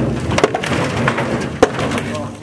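Timber formwork boards being broken apart with a sledgehammer: wood cracking and clattering, with two sharp blows, one about half a second in and one near the end.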